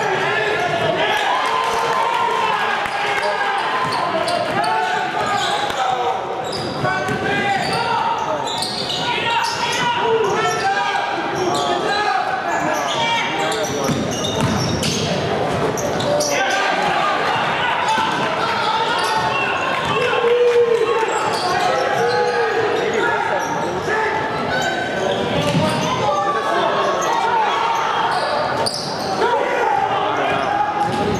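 Sounds of a basketball game in a large gym: voices of players and spectators calling out, with a basketball bouncing on the hardwood court.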